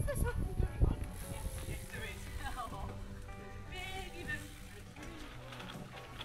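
Background music with steady held notes, over a low rumble and a few knocks in the first second or so from riding over the rough track.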